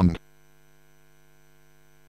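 A steady, faint electronic hum made of several fixed pitches, heard just after a synthesized voice finishes a word in the first moment.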